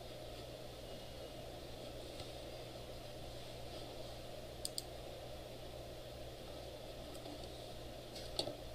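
Two quick computer-mouse clicks close together a little past halfway, over a steady low room hum.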